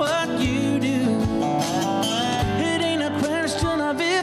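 Live acoustic country band: a male lead vocal over acoustic guitar, keyboard and lap-played slide guitar, with gliding sustained notes.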